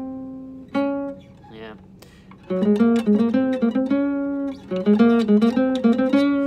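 Classical guitar played note by note: a held note, another plucked note about a second in, a short lull, then from about two and a half seconds in a run of quick single picked notes, several a second.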